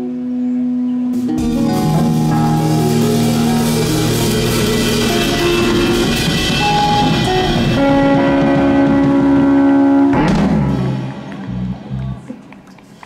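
Live rock band of drum kit, electric and acoustic guitars, bass and keyboard playing the song's closing bars: a held chord, then the full band comes in loud with washing cymbals, ending on a final hit about ten seconds in that rings out and dies away.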